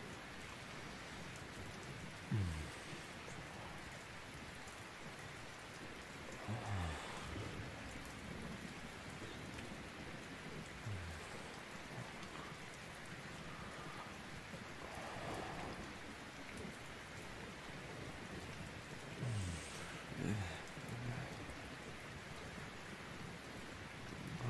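Steady rain, an even hiss of drops on a surface, as a cozy cabin ambience bed. A few brief low sounds stand out above it, the most prominent about 2 seconds in and a pair near the 20-second mark.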